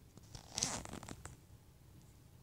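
A short, faint rasping rustle of handling against a fabric bed cover, about half a second in and lasting under a second.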